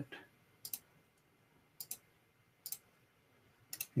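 Faint computer mouse clicks, four short clicks or quick pairs of clicks, about a second apart.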